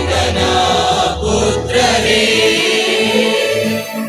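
Choir singing a hymn over a steady low sustained accompaniment.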